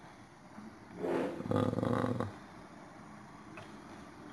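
A man's wordless drawn-out vocal sound, breathy at its start and then voiced, lasting just over a second, about a second in.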